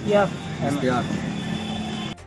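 A man's short spoken reply in Hindi over steady outdoor background noise, with a steady low hum carrying on after he stops, until an abrupt cut.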